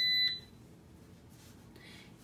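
Electronic beep from a Power XL Vortex air fryer, one steady high tone cutting off about a third of a second in as the fryer shuts off, followed by faint room tone.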